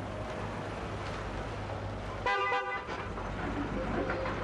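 A car horn, from a black Mercedes-Benz sedan, honks once with a single short blast of a little over half a second, about two seconds in, over a steady low hum.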